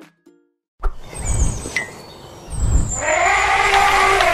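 Logo sting: after a brief gap, high bird-like chirps and two low rumbles, then a loud swelling sound that rises and falls in pitch from about three seconds in.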